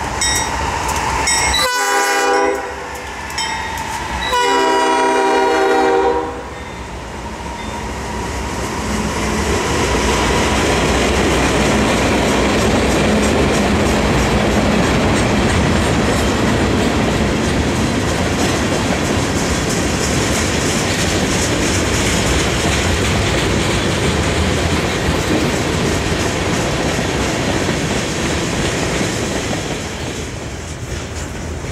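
A Norfolk Southern diesel locomotive sounds its multi-note air horn twice, a short blast and then a longer one. The freight train then rolls by: a steady rumble of tank cars and boxcars with the clickety-clack of wheels over rail joints.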